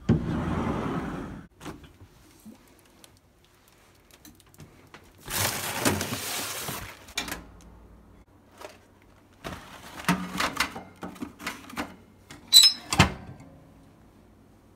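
Handling sounds as a toaster oven is loaded: rustling of packaging twice, then a run of clicks and clatters from the oven door and tray, with a brief high beep and a sharp knock near the end.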